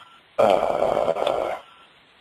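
A man's drawn-out, creaky 'uhh' of hesitation, lasting a little over a second.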